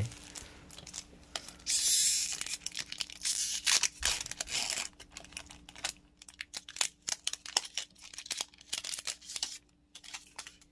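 Foil wrapper of a Magic: The Gathering booster pack torn open by hand, with a loud rip about two seconds in. It is followed by crinkling of the foil and a run of small sharp clicks as the pack is pulled apart and the cards are taken out.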